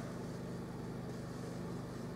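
A steady low hum with a faint even background noise, unchanging throughout.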